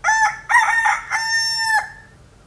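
Rooster crowing, cock-a-doodle-doo: two short notes and then one long held note.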